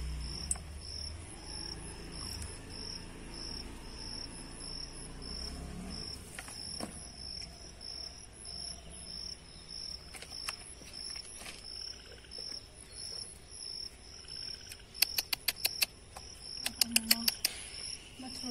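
Insects chirping steadily in a high, evenly pulsing trill. Near the end, two quick runs of sharp clicks stand out as the loudest sounds.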